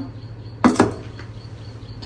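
Metal rice-cooker inner pot, filled with rice and water, set down on a stone countertop: a short clunk made of two quick knocks less than a second in.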